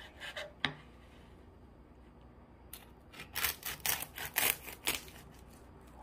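Knife sawing through the crisp, blistered skin of a roast lechon pork belly, giving a couple of short crackles about half a second in and then a dense run of sharp crunching crackles over the second half.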